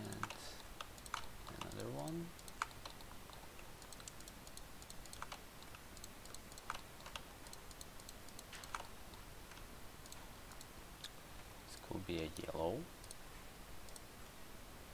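Scattered, irregular clicks of a computer mouse and keyboard, a few every second, as polygons are picked in a 3D modelling program.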